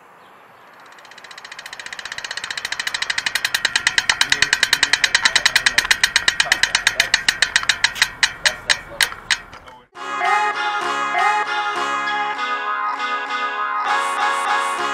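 A fast run of clicks fades in and grows loud, then slows and spaces out until it stops just before ten seconds in. Music with plucked strings then starts.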